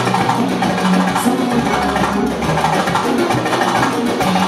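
Live band music, loud and continuous, driven by busy drums and percussion.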